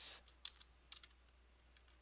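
Computer keyboard typing: a few short keystrokes in the first second.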